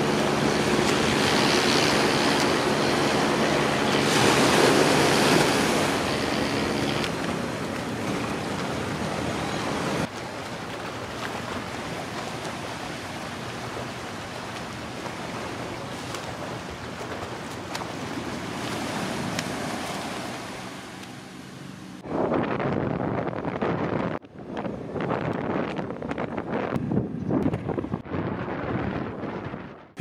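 Small waves washing onto a sandy shore, an even wash of surf. For the first several seconds a steady low engine hum runs under it. About ten seconds in the wash drops to a quieter, even level; from about 22 seconds it turns choppier and uneven, then cuts off suddenly.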